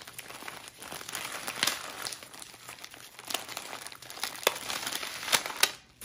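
Plastic bubble wrap crinkling and rustling as it is handled, with scattered sharp crackles.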